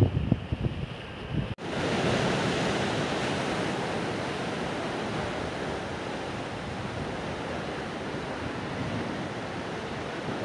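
Wind buffeting the microphone in gusts for about a second and a half, then, after a cut, a steady wash of sea waves breaking against the rocks at the foot of a seawall.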